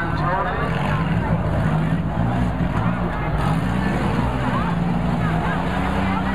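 Engines of front-wheel-drive demolition derby cars running, their pitch rising and falling as the drivers rev, with crowd voices over them.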